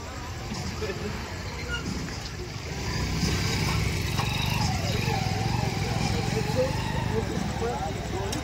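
Crowd of voices talking over a steady low engine rumble from heavy construction machinery, both growing louder about three seconds in.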